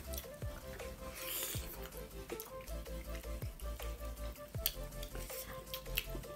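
Quiet background music with held notes and a low beat about once a second, under soft close-up eating sounds: fingers squishing dhido and pork gravy, chewing, and a few sharp little clicks.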